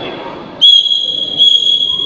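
Judges' whistles blowing long, steady, high blasts to signal the bout decision: one blast starts about half a second in, is renewed at about a second and a half and holds on past the end.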